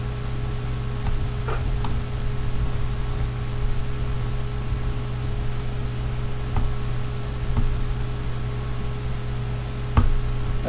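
A steady background hum and hiss. A few faint small clicks come through as tiny screws are turned with a screwdriver into a model car's metal door frame.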